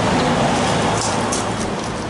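Kitchen knife scraping the scales off a snakehead fish, a steady scratchy rasp with a few sharper strokes, over a low steady hum.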